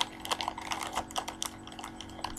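Clear plastic bag crinkling as it is handled: a run of small, irregular sharp crackles over a faint steady hum.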